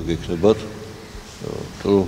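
A man's voice speaking slowly in short, halting syllables with a pause in between, and a brief low buzzy hum in the pause.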